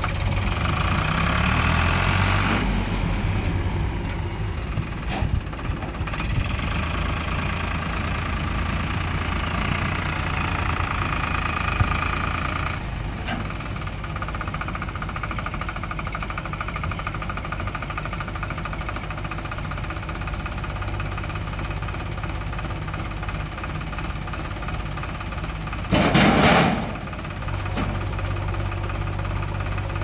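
A JCB backhoe loader's diesel engine running steadily, sounding heavier during two stretches in the first half as the machine works. About four seconds before the end a loud burst of noise, lasting under a second, rises above the engine.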